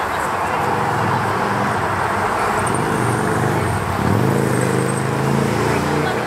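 Busy street and crowd ambience: steady road traffic under the chatter of passers-by, with a vehicle engine note rising in pitch from about four seconds in.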